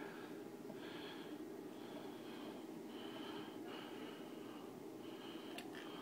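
Close breathing through the nose, a run of short whistly breaths about a second apart over a steady low hum, with one sharp click near the end.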